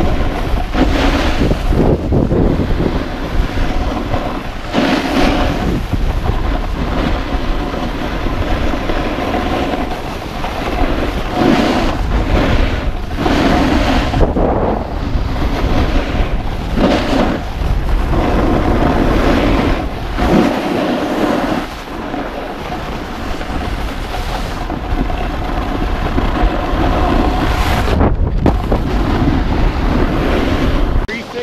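Wind buffeting the microphone over the scrape and rumble of a snowboard sliding on groomed snow, swelling in surges every few seconds as the board carves and checks speed.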